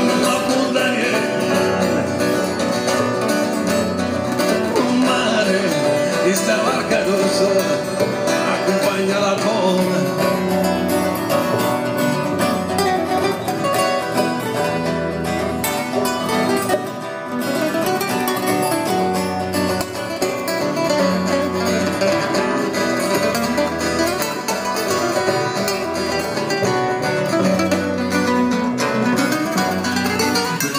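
Acoustic music from guitars and a double bass, the guitars plucked, playing steadily.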